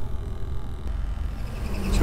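Caterpillar propane forklift engine running steadily, heard at its tailpipe as a low, even rumble.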